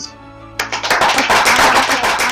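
A group of people applauding, dense hand clapping that starts about half a second in, over steady background music.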